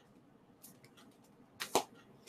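Handling noise from a comic book being put down: a few faint ticks, then two sharp taps close together near the end.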